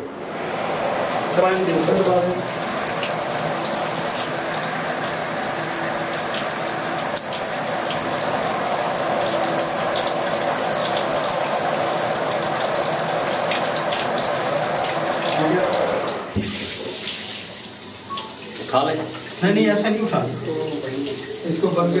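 Shower spray hitting a fusion splicer and the plastic sheet behind it, a steady rush of splashing water that cuts off suddenly about 16 seconds in.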